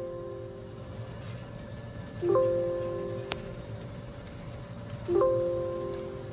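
Electronic warning chime of the Ford F-350, ringing just after the ignition is switched off: a chord of a few tones that fades out and repeats about every three seconds. A single sharp click falls between the chimes.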